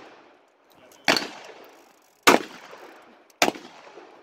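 Three revolver shots, about a second apart, each sharp crack followed by a fading echo.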